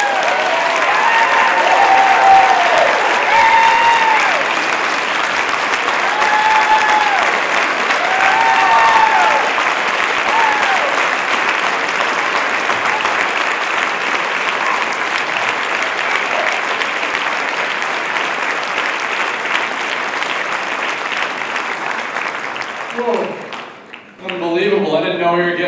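Audience applauding, with voices cheering over roughly the first ten seconds; the clapping slowly dies down and stops about a second before the end.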